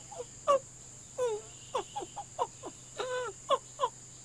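Baby monkey calling from up in a tree: a quick, irregular run of short squeaky chirps, many falling in pitch, with one longer held call about three seconds in.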